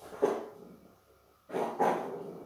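A dog barking three times: one bark about a quarter second in, then two quick barks near the end.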